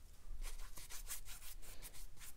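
Watercolour brush rubbing and scratching in quick, irregular strokes as it works paint in a palette well and brushes it onto cold-press cotton paper.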